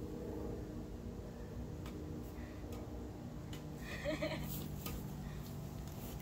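Backyard badminton rally: a few faint taps of rackets striking the shuttlecock, then a short pitched vocal cry about four seconds in, over a steady low hum.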